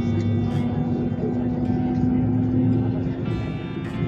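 Airbus A321 cabin noise while taxiing: a steady low rumble from the jet engines, heard through the window seat, with music and voices playing over it.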